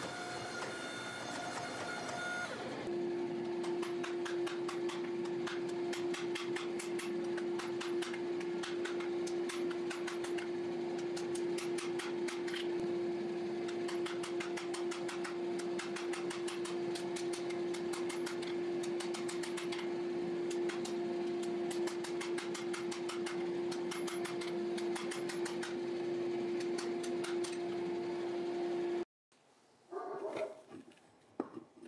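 Hot steel billet being forged: many quick, irregular hammer blows on steel over a steady machine hum. The hum changes pitch about three seconds in, and all of it cuts off abruptly near the end.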